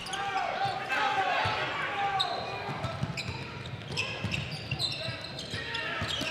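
Game sounds on an indoor hardwood basketball court: a basketball dribbling in repeated low thuds, with short high sneaker squeaks in the middle of the stretch, over the murmur of voices echoing in the gym.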